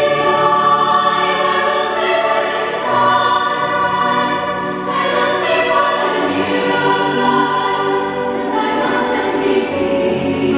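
A choir of girls' and women's voices singing sustained, chordal lines, with a few hissed 's' consonants along the way, in the echo of a church.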